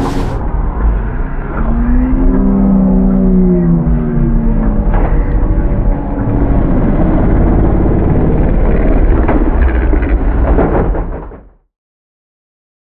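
Polaris RZR XP 1000's twin-cylinder engine revving hard over a heavy low rumble, its pitch rising and then falling a couple of seconds in. A few sharp knocks follow as the side-by-side rolls over, and the sound fades out near the end.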